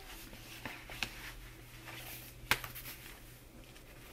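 Faint handling of paper packaging: soft rustling with light taps and two sharp clicks, about one second and two and a half seconds in, over a low steady hum.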